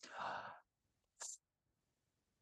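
A man's soft sigh, one breath out lasting about half a second, then a brief faint click a little over a second in.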